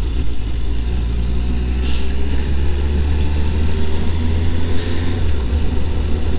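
Suzuki GSX-S750's inline-four engine running at steady revs while riding, a steady low hum under a haze of road and wind noise. The engine is in its break-in period.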